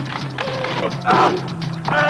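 Film trailer soundtrack: a steady low drone with mechanical-sounding effects, and short sliding pitched sounds about a second in and near the end.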